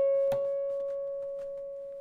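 Acoustic guitar's second string, fretted at the 12th fret and bent a full step from B up to C sharp, held at the top pitch and ringing out as it slowly fades. A faint click comes about a third of a second in.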